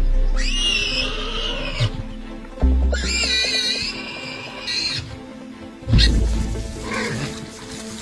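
A warthog squealing twice in distress, two long, high-pitched, wavering squeals of about a second and a half each, while a lion pins it down. Background music with deep bass booms runs underneath.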